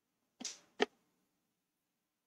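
A short breathy rush, then a sharp click about half a second later, in an otherwise quiet pause.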